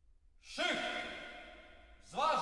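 A voice with echo: one drawn-out vocal sound, its pitch bending, starting about half a second in and fading away.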